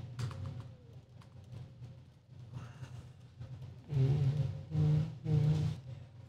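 Soft laptop keyboard typing for the first few seconds. Then, about four seconds in, a man hums a few held notes of a tune.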